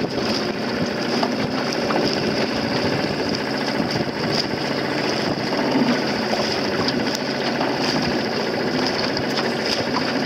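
Small outboard motor of a boat running steadily at low speed while towing a dinghy, with a fast, even chatter.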